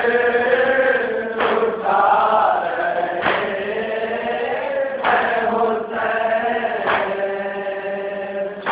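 Group of men chanting a nauha, a Muharram lament, in unison. A sharp slap about every two seconds keeps the beat: hands striking the chest in matam.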